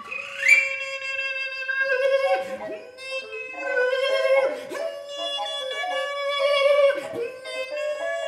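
Live contemporary music for a large recorder and voice: a steady held tone with a second line above it that slides and bends in pitch, with a few short downward swoops.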